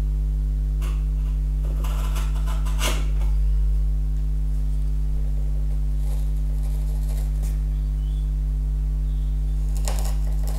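Steady electrical hum throughout, with a few short scraping cuts of a sharp chisel paring pine end grain down to the knife lines.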